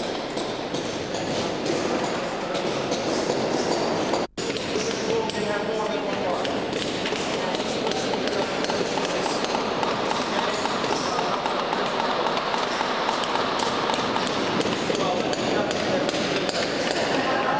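Steady murmur of indistinct voices with light tapping and clinking of hand tools on mosaic stones as workers restore the floor. The sound drops out briefly about four seconds in.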